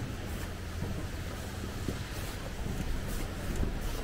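Wind buffeting the microphone as a steady low rumble, with a few faint footfalls on the steel grating walkway.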